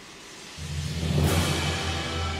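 Symphonic film score: a loud, sustained low chord of brass and timpani enters about half a second in, with a rushing swell in the highs that rises and fades around a second in.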